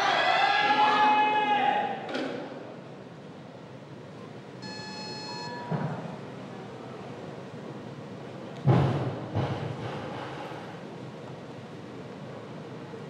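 Weightlifting arena sound: a chant-like voice fades out over the first two seconds, then an electronic signal tone sounds for under a second about five seconds in, as the attempt clock reaches 30 seconds remaining. A sudden loud burst of crowd noise follows near nine seconds, over a steady hall murmur.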